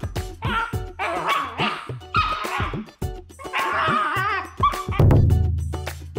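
Welsh terrier puppy making drawn-out, talking-like whining vocalisations in several bouts, rising and falling in pitch, over background music with a steady beat. About five seconds in, a loud low sustained tone comes in.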